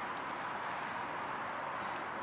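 A Canada goose pecks feed off wooden boardwalk planks, with light taps, over a steady background hiss.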